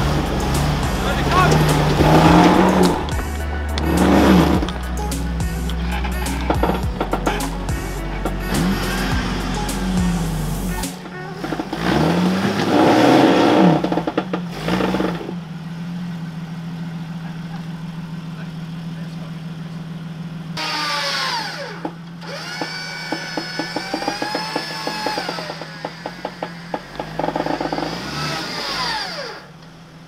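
Jeep Wrangler TJ engine revving hard in repeated surges under load as it climbs a slippery, rutted track. About eleven seconds in, the heavy engine sound drops away to a steady idle.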